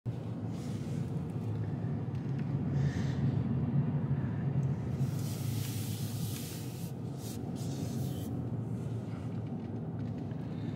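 Cabin noise inside a 2024 Subaru Impreza RS driving slowly: a steady low hum of engine and road, with a stretch of louder hiss about halfway through.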